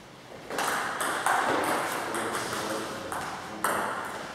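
Table tennis ball struck back and forth in a rally, starting with the serve about half a second in. A handful of sharp clicks of the ball on the bats and the table, each trailing off in the hall's echo.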